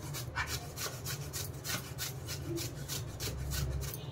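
Pumpkin being grated on a hand-held flat metal grater: rasping strokes, about three a second.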